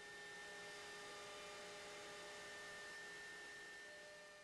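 Faint steady hum with a few constant tones over a light hiss, beginning to fade out near the end.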